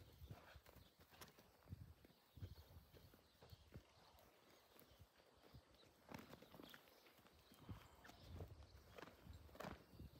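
Faint, uneven hoofbeats of a sorrel mare and her foal trotting on dry dirt, soft knocks that cluster more thickly in the second half.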